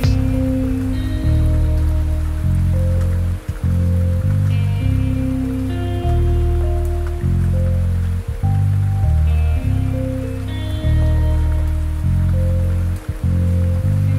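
Chill lofi hip-hop music with deep, sustained bass chords changing every second or two and soft melody notes above, over a steady sound of rain.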